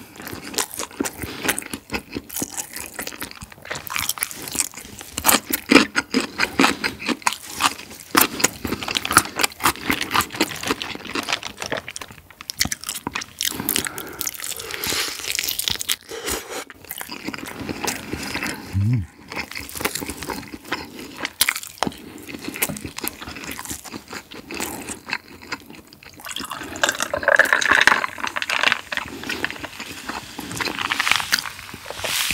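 Close-miked eating of sauce-coated fried chicken with a thin crisp batter: irregular wet, sticky crunching and chewing. Near the end, beer is poured into a glass.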